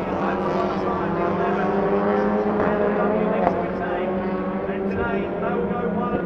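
TCR touring cars' turbocharged four-cylinder engines running at speed on the circuit, a continuous engine drone with a slight rise and fall in pitch.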